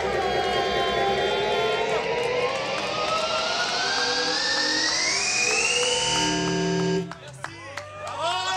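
Live electronic music: a long rising sweep climbs steadily in pitch for about six seconds, then the music cuts out abruptly about seven seconds in.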